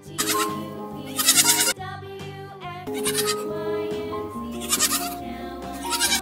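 Goats bleating in about five short calls over children's background music.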